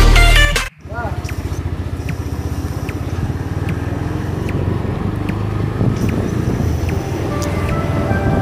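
Electronic music cuts off abruptly less than a second in, giving way to a motorcycle engine running steadily at cruising speed, heard from on the moving bike, a fast low pulsing with some wind and road noise.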